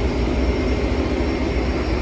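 Suzuki 150 outboard motor running steadily at trolling speed, a constant drone mixed with the rush of water from the wake.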